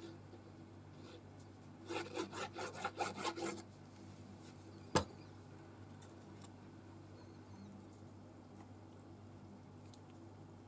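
A glue bottle's nozzle is rubbed quickly back and forth over the back of a paper card piece, about ten short scraping strokes in under two seconds. A second or so later comes one sharp knock, the loudest sound.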